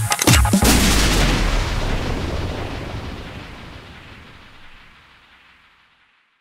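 End of a drum'n'bass track: the breakbeat drums stop about half a second in on a final hit. That hit rings out with deep bass and fades away slowly over about five seconds.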